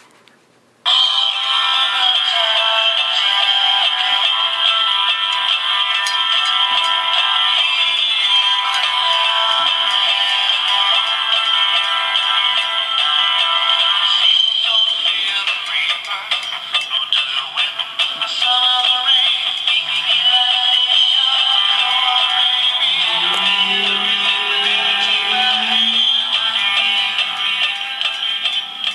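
Animated plush Santa toy playing a song with singing through its small built-in speaker, thin and tinny with little bass. The song starts about a second in, after a brief pause.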